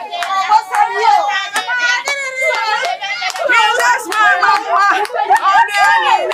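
Several women's excited voices calling out over one another, with scattered hand claps.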